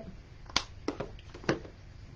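A few short, sharp clicks and taps from handling an acrylic paint tube and palette as blue paint is put out.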